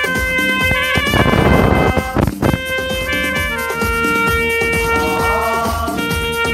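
Saxophone playing a Hindi film-song melody in long held notes, some with vibrato, over a backing track with percussion. The backing swells and hits about two seconds in, and the saxophone then holds one long lower note.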